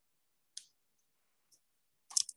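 Near silence, broken by a faint short click about half a second in and a softer one near the middle.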